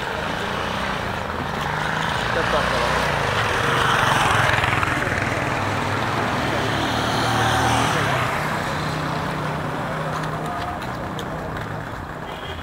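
City street traffic: a motor vehicle's engine and tyres passing close by, growing louder over a few seconds and then fading away.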